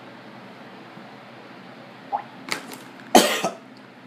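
A man coughing and spluttering with a throat burnt by a shot of straight Tabasco sauce: a couple of short coughs about two seconds in, then one loud cough a second later.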